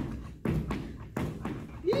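Footfalls of a person galloping sideways on a wooden hall floor: three thudding landings about two-thirds of a second apart, each ringing briefly in the hall.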